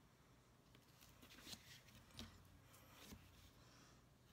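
Faint scratching of a black marker pen writing on card: a few short strokes between about one and three seconds in, over quiet room tone.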